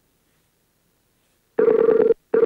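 Skype call ringing as a call is placed: near silence, then a steady electronic ring tone starts about a second and a half in.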